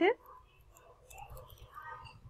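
The tail of a spoken word, then faint murmured speech under the breath, with a few soft clicks from keyboard typing.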